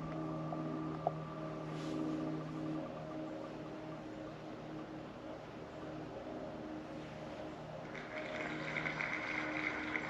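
A distant engine droning steadily in the background, fading away about four seconds in, with a couple of faint clicks near the start and a steady high buzz coming in near the end.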